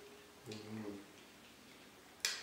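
A pause in conversation: quiet room tone with one brief, soft low vocal murmur from a man about half a second in.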